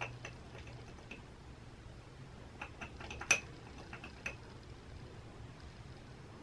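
Scattered small clicks and ticks from guinea pigs moving about their cage, with one sharper click about three seconds in.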